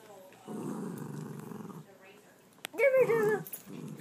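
A small dog growling low and rough for about a second and a half: grouchy, not liking being handled. A short voice follows about three seconds in.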